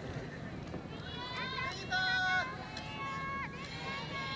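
A voice calling out in a few drawn-out, held shouts, over a steady outdoor background noise.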